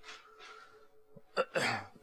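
A man's short, sharp intake of breath through the mouth, just after a small mouth click, during a pause in speech. A faint steady hum sits underneath.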